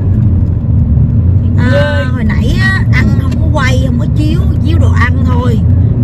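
Steady low road and engine rumble heard inside the cabin of a moving car, with a woman's voice over it from about two seconds in.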